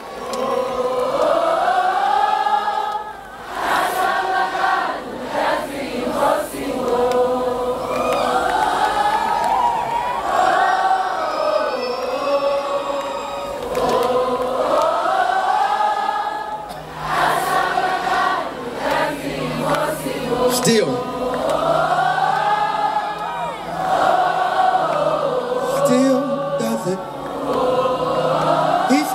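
A large crowd singing a worship chorus together, mostly unaccompanied, in long sustained phrases. A low held note joins in about two-thirds of the way through.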